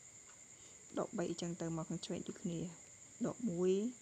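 A man speaking in short phrases, with a pause at the start, over a steady high-pitched whine in the background.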